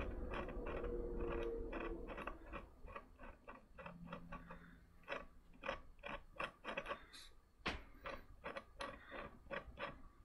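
Craft knife blade scratching the surface of a wood-burned birch panel: a run of short, faint, irregular scrapes, a few a second, as burned wood is scraped away to lighten it for highlights.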